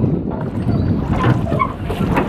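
A metal rowboat being rowed by hand with oars, with wind rumbling on the microphone as a steady low noise.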